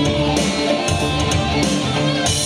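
Instrumental stretch of a song: guitar-led band backing with a steady beat, between sung lines.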